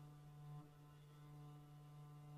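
Solo cello playing softly, holding one low bowed note steadily with its overtones ringing. There is a slight change in the note about half a second in.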